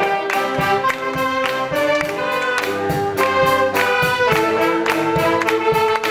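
Saxophone ensemble of alto, tenor and baritone saxophones playing a tune in harmony, with a steady beat.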